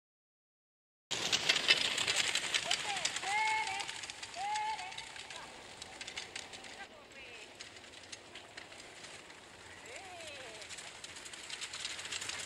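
Harnessed dogs giving several short, high whines that rise and fall, a few in quick succession and one more later, over a crackling, crunching noise with many small clicks that is loudest at the start.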